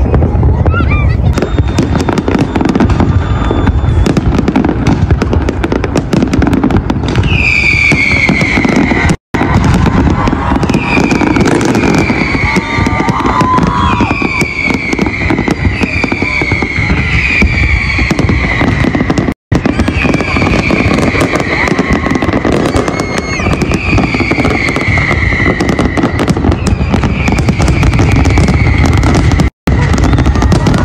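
A large aerial fireworks display: dense crackling and continuous booming shell bursts. From about seven seconds in, repeated falling whistles come through the bursts. The sound cuts out briefly three times.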